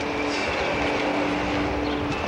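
Portable cassette boombox playing heavy metal: a loud, distorted wash with a few held notes.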